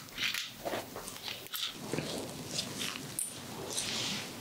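Close-miked handling of ear-cleaning tools in a plastic tray: irregular soft rustles and light clicks, several a second.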